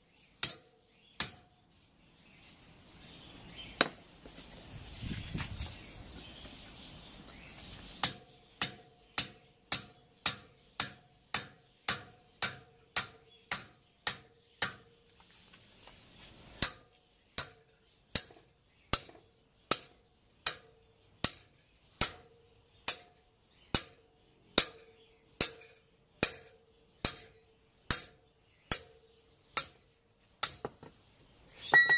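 Small sledgehammer striking steel over and over, each blow with a short metallic ring. After a few blows there is a lull of about six seconds with handling noise and a low thud, then steady hammering at about three blows every two seconds.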